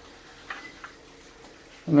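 Faint, steady trickle of water leaking down from the deck above, with two light ticks about half a second in.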